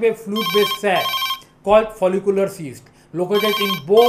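A telephone ringing in two short bursts about three seconds apart, under a man's speech.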